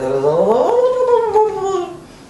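A woman's long wordless vocal noise that glides up in pitch, holds and sinks a little before stopping. It imitates a man's tongue working in one spot during oral sex.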